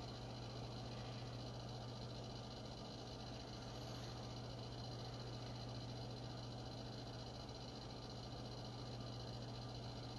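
Faint room tone: a steady low hum with a few faint steady high-pitched tones and a light even hiss, unchanging throughout.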